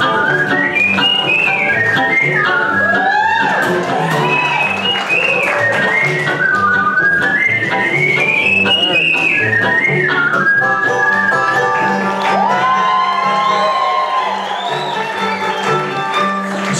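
Bluegrass band playing live, with banjo, acoustic guitar and upright bass, while a whistled melody carries the tune, gliding up and down.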